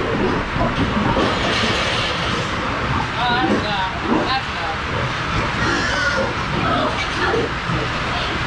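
A crowd of pigs grunting and squealing over a steady noisy din, with a run of short rising-and-falling squeals about three to four seconds in.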